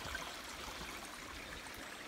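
Small, shallow stream running over stones, a steady trickling.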